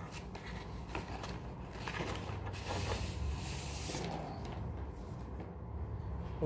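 Paper rustling as a large envelope is handled and opened, with a few light ticks from the handling; the rustle is loudest about two to four seconds in.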